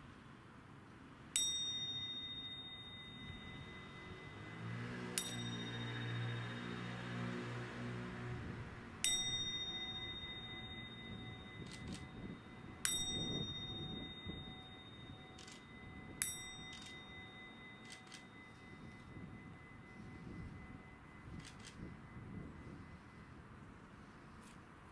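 A small metal bowl bell struck five times, roughly every three to four seconds. Each strike is a clear high ring that fades slowly.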